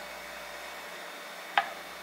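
Steady faint hiss with one sharp click a little past halfway: a metal fork tapping down onto avocado toast on a wooden cutting board as the spreading begins.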